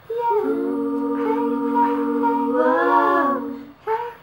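Wordless female a cappella singing: several voices hold long notes together in harmony, with the upper lines bending and sliding down about three seconds in before the chord fades. Short, evenly repeated sung notes come back near the end.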